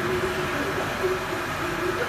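Heavy-duty engine lathe running, giving a steady mechanical noise with a faint wavering hum from its headstock and feed drive.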